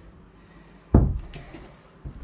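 A single heavy thud about a second in, like a door or something wooden being knocked or shut, over faint room tone.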